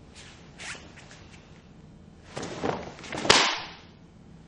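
Cotton karate gi swishing with fast kata movements, building to a single sharp snap of the uniform a little past three seconds, the loudest sound here.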